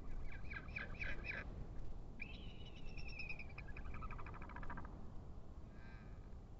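Bird calls: a rapid series of harsh notes, then a long held call that breaks into a quick pulsed series.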